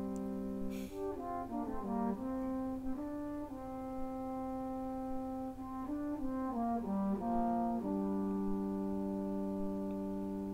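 Two marching mellophones playing a slow duet in harmony: long held notes, with the two parts moving to new notes between about one and three seconds in and again between six and eight seconds in.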